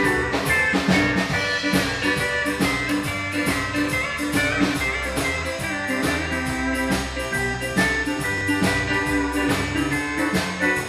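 Live country band playing an instrumental break with a steady drum beat, the pedal steel guitar played with a bar, its notes sustained and sliding.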